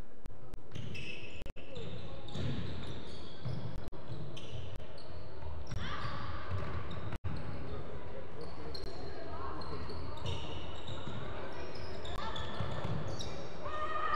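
Players running on a wooden sports-hall court: sneakers squeaking in short high chirps and footsteps, with players' voices calling out in the echoing hall.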